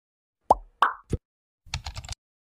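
Intro-animation sound effects: three quick pops about a third of a second apart, then a half-second run of rapid keyboard-typing clicks as the search text is typed.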